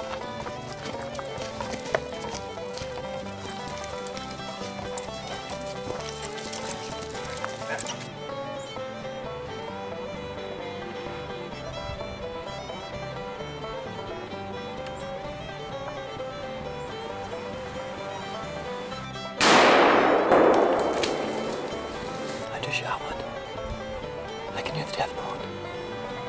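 Background music plays throughout. About 19 seconds in, a single loud gunshot cracks out and dies away over a couple of seconds: a hunter's shot at a black bear standing up at a bait bucket.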